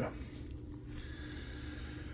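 Quiet room tone with a steady low hum; no distinct card handling is heard.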